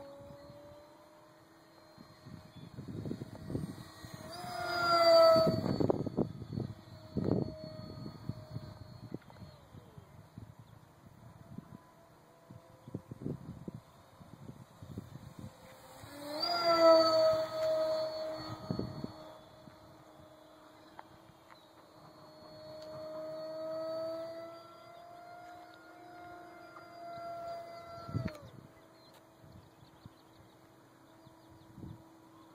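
Brushless electric motor and 6x4 propeller of a small RC delta wing whining in flight. It grows loud as the plane passes close about 5 and 17 seconds in, falls in pitch as it goes by, and the pitch drops and cuts out near the end as the throttle is pulled back. Wind buffets the microphone during the loud passes.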